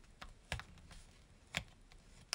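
Folded origami paper crackling faintly as fingers pinch and crease the thick layered model: a few short, sharp crackles, the loudest about half a second in and another about a second and a half in.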